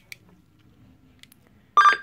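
Near quiet, then near the end a single short, loud beep-like tone lasting about a fifth of a second.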